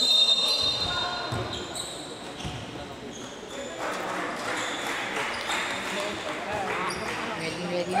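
Basketball bouncing on a hardwood gym court during play, with short high sneaker squeaks, the strongest right at the start. From about four seconds in, voices of players and onlookers rise in the hall.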